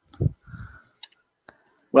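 A low thump and a short rub on a headset microphone as it is touched, followed by a few faint clicks.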